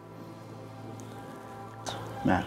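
Soft background music of sustained, held chords, with a faint click about a second in and another near the end.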